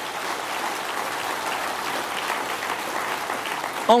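An audience applauding, with steady, even clapping throughout. A man's voice comes back in over it just at the end.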